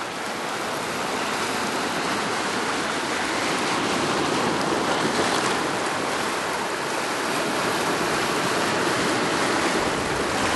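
Ocean water washing and churning over a rocky shoreline, a steady rushing noise that swells a little over the first few seconds.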